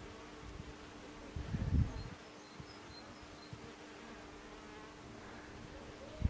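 A bee buzzing as it flies close past, swelling and fading about a second and a half in, over a faint steady low hum.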